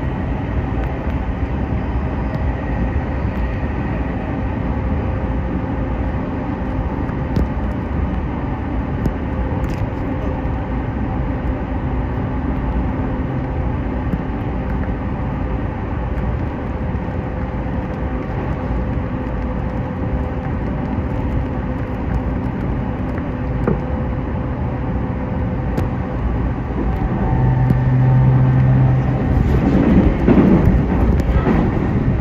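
Steady running noise heard from inside a moving electric train: a constant rumble of wheels on rails with a faint motor hum. Near the end a low hum comes up and the noise gets a little louder.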